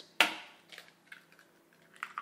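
An egg cracked sharply against the rim of a mixing bowl about a quarter second in, followed by a few faint ticks of the shell being pulled apart.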